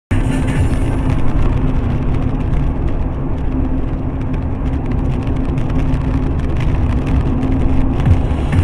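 Car driving at highway speed, heard from inside the cabin through a dashcam: a steady, loud drone of engine and tyres on a wet road, with a constant low hum.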